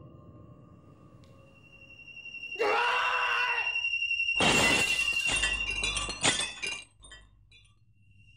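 A man's pained, angry shout, then a wall mirror smashed by his fist: a loud crash of breaking glass about four and a half seconds in, followed by shards clinking and falling for about two seconds.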